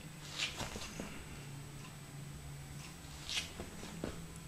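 Quiet room with a faint steady low hum and two soft scuffs, one about half a second in and one near the end.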